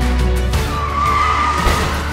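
Vehicle tyres screeching in one steady squeal that starts a little under a second in and holds for about a second, over background music.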